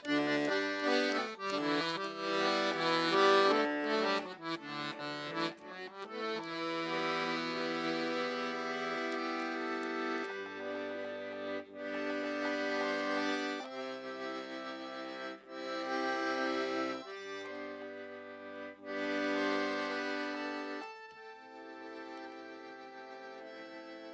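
Piano accordion playing a Bolivian Andean tune solo: a quick run of short melody notes for about the first six seconds, then slow held chords over bass notes that change every second or two, easing onto a quieter held chord near the end.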